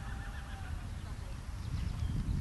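Wind rumbling on the phone's microphone, with a faint, drawn-out whinny from a distant horse in the first second.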